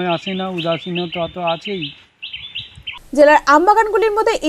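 Small birds chirping over and over, several short high calls a second, behind a man's voice. The chirping stops about three seconds in, when the sound cuts to a different speaker.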